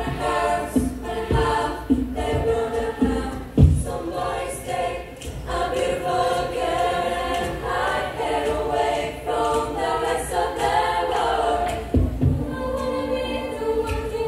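Women's choir singing a cappella in several parts, sustained vocal lines all the way through. A few deep thumps sound under the voices, the strongest about four seconds in and two more near the end.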